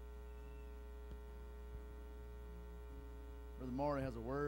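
Steady electrical mains hum in the sound system's audio feed, a low buzz with many overtones. A man's voice starts through the microphone near the end.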